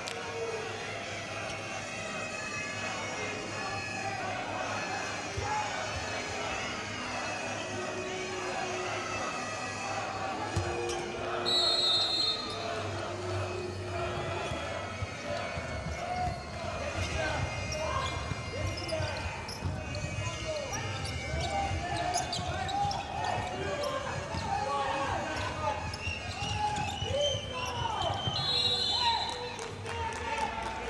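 Futsal ball thudding on the indoor court amid players' shouts and arena crowd noise. Two short, shrill referee's whistle blasts sound, one about a dozen seconds in and one near the end.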